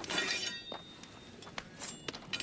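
Metal weapons clashing as they are thrown onto a fire. A loud clatter at the start rings on briefly, and a shorter clink follows near the end.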